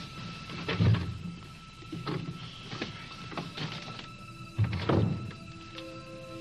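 Soft background music score of sustained notes, with a dull thump about a second in and another about five seconds in.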